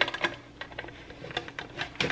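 Guillotine-style bagel slicer's blade being worked down through a seeded bagel in short in-and-out strokes: a quick, irregular run of small clicks and crackles as the crust crunches and the plastic guide rattles. The blade is mushing the bagel rather than cutting it cleanly.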